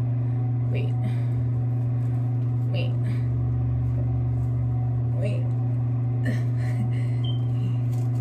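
A steady low hum at an even level, with the word "wait" spoken briefly three times over it.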